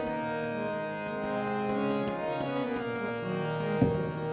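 Two harmoniums playing a slow instrumental passage of held reed notes that change pitch a few times, with a single tabla stroke near the end.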